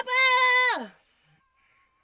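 A singer's voice holding a high sung note at about C5, which slides down in pitch and stops under a second in.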